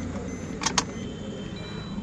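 Car key turned in a Maruti Suzuki Ertiga's ignition lock: two quick clicks close together under a second in, switching the ignition on with the second key during key programming. A faint high steady tone follows.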